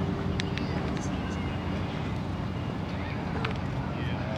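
Outdoor city ambience: a steady low rumble of distant traffic, with faint voices of passers-by and a few short clicks.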